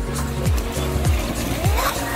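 Background music with a steady beat of falling bass notes about twice a second. Near the end, a radio-controlled speed boat's motor whines as it passes close.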